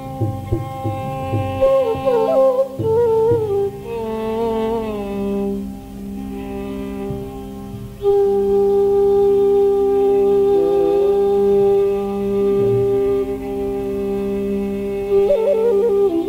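Carnatic bamboo flute playing gliding, ornamented phrases over a steady drone. About halfway through the flute settles into a long held note.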